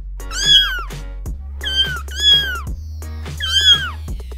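Four high-pitched kitten meows, a dubbed-in cat sound effect, each falling away at the end, over background music with a steady beat.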